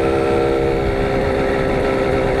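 Simson Star moped's 50 cc two-stroke single-cylinder engine running at a steady cruise, with wind noise on the microphone.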